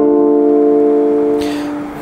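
A held instrumental drone of a few steady notes sounding together, unchanging in pitch and slowly fading, with a short breath-like hiss about a second and a half in.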